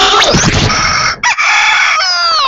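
A rooster crowing, played as a sound effect in a radio station's playout: held notes with a brief break just past a second in, the last note starting to slide down at the end.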